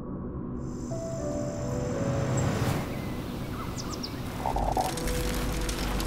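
Cinematic background music of sustained tones, swelling to a whoosh about halfway, with a deep low rumble coming in near the end.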